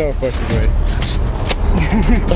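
Young men shouting in disbelief and laughing, over a steady low rumble on the microphone, with one sharp click about one and a half seconds in.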